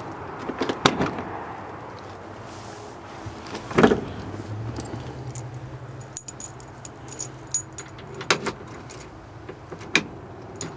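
A bunch of keys jangling on their ring as a key is fitted into a truck's dashboard ignition lock. There are a few short knocks, the loudest about four seconds in.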